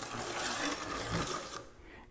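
Fine diamond stone drawn once along the side of a hand saw's steel plate over the teeth, a light dressing stroke that knocks off the burr left by sharpening. A steady scraping hiss for about a second and a half, then it stops.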